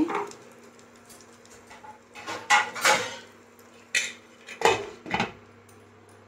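Glass lid being set onto a nonstick frying pan, knocking and clinking against the pan several times between about two and five seconds in.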